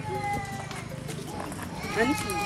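Faint voice in the background over a low steady hum, with a few held, slightly falling tones about a fifth of a second in.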